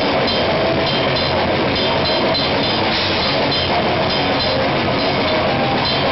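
Heavy metal band playing live and loud, heard from beside the drum kit: drums and cymbals pounding without a break over distorted guitar.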